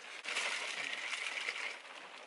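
Pre-workout powder being scooped from a plastic tub and mixed into water in a plastic shaker bottle: a steady gritty hiss lasting about a second and a half.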